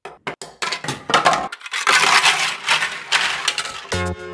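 Hollow 3D-printed plastic airframe parts clicking and clattering against a tabletop: a few separate sharp clicks, then a dense rattling clatter from about a second in.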